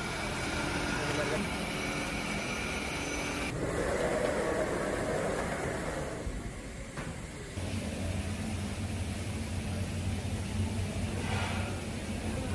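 Automatic fabric-cutting machine running in a garment factory: a steady machine noise with a low hum. The sound changes abruptly twice, about a third of the way in and again past halfway.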